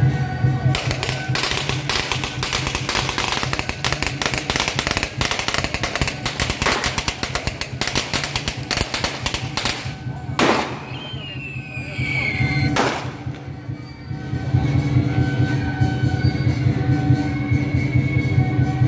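A string of firecrackers crackling rapidly from about a second in until about ten seconds, over procession music, then two sharp bangs a couple of seconds apart. The music carries on alone at the end.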